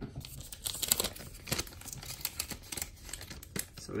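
A trading-card pack wrapper being crinkled and torn open by hand, a fast irregular run of sharp crackles.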